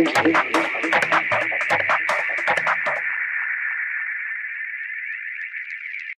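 Closing bars of a hard techno / tribal techno track. The fast drums and percussion hits stop about halfway through, leaving a lone high electronic sound that slowly fades out.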